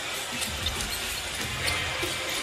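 Basketball arena crowd noise with music playing, and a basketball being dribbled up the court.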